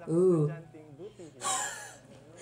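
A man's stifled laughter: a short voiced sound, then a sharp breathy gasp about one and a half seconds in.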